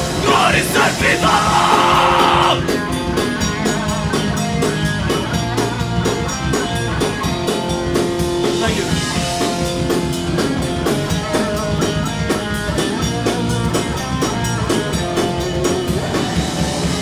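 Live oi/streetpunk band playing loud: distorted electric guitars, bass and drum kit. A dense wash of sound in the first couple of seconds gives way, about two and a half seconds in, to a fast, steady drum beat under the guitars.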